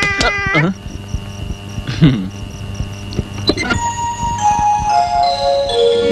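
Film soundtrack: a long, wavering held voice ends about half a second in, followed by quiet background music with a brief falling cry near two seconds. From about four seconds in, a run of bell-like notes steps downward in pitch.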